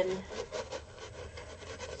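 Stiff chip brush scrubbing thick white acrylic paint into raw, ungessoed canvas: a scratchy, rasping rub in quick repeated back-and-forth strokes.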